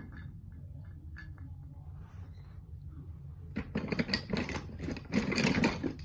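Toy train track pieces clattering and clicking together as they are handled, in two bursts of rapid rattling, the first starting about three and a half seconds in and the second, louder, near the end.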